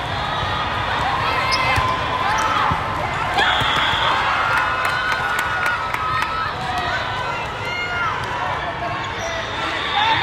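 Indoor volleyball: sneaker squeaks on the sport court and ball hits over the chatter of a crowd in a large hall. A whistle blows briefly about three and a half seconds in.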